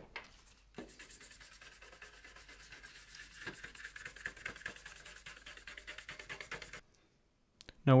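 Toothbrush scrubbing a printed circuit board wet with isopropyl alcohol: a quick, even brushing rasp of rapid strokes that stops abruptly a little before the end.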